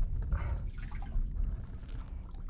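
Low, uneven rumble of wind buffeting the camera microphone and handling noise as the camera comes up out of a hatch, with faint trickling water.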